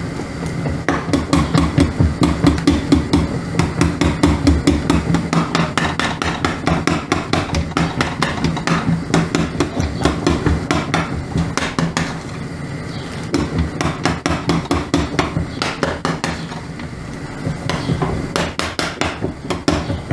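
A spoon knocking and scraping rapidly against a stainless steel pot, about four strokes a second, as clumped boiled pasta is broken up and separated. The knocking pauses briefly about twelve seconds in, then resumes.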